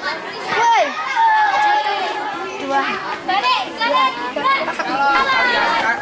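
Schoolchildren's voices talking and calling out over one another, likely the line answering a count-off command during scout drill.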